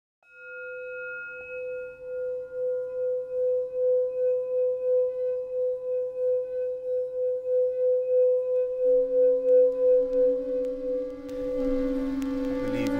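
Singing bowl ringing with one sustained tone that swells and fades about twice a second. A lower tone joins about nine seconds in, and the rest of the music enters near the end.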